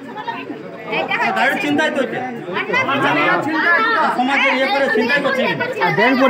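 Several people talking over one another in a heated group conversation.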